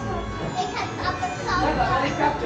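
Children's voices chattering, with music playing in the background.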